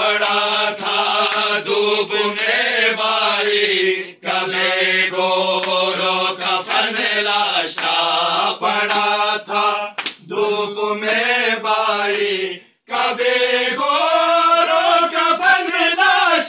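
A group of men chanting a noha, a Shia lament in Urdu, together and without instruments, in long held melodic phrases broken by short pauses for breath.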